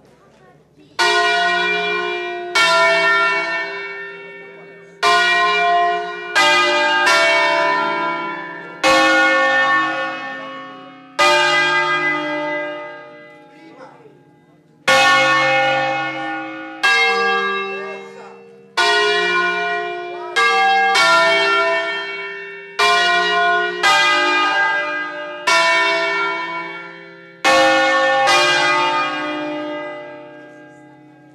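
Ottolina bells of 1950, a five-bell set in D-flat, swung by rope on their wheels: one bell stroke after another, each ringing out and slowly dying away, about every one to two seconds, with a longer pause a little before halfway.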